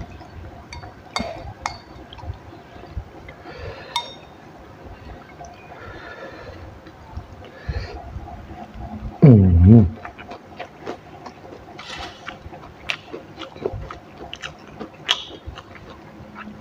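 Close-miked eating sounds of a person eating by hand: chewing, lip smacks and small sharp mouth clicks throughout. About nine seconds in comes one short, very loud voiced sound that falls in pitch.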